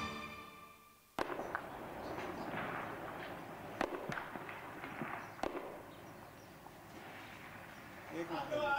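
Distant small-arms gunfire: a few isolated sharp shots ringing out over a steady outdoor background rush.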